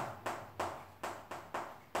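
Chalk writing on a chalkboard: a series of about five short, sharp taps as the chalk strikes the board stroke by stroke.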